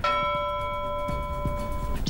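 A bell-like chime struck once, ringing steadily with several clear overtones for about two seconds and then cutting off: a news bulletin's transition sting between items.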